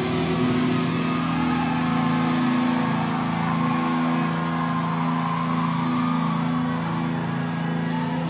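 Live rock band's electric guitars holding one chord that rings on steadily, without drum hits.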